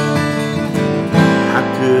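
Acoustic guitar playing chords that ring on, with a fresh, louder chord a little over a second in. A man's singing voice comes in near the end.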